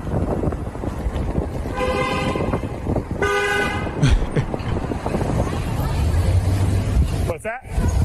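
A car horn honks twice, about a second and a half in and again just after three seconds, each honk under a second long, over a steady low rumble of street traffic and wind.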